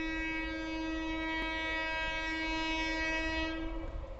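Indian Railways locomotive horn sounding one long, steady multi-tone blast from an approaching train, cutting off just before the end.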